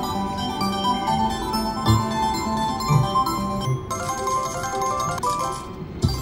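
Reel slot machine playing its electronic melody of bell-like chimes while the reels spin and stop on a small win, with a few low thuds about two, three and three and a half seconds in.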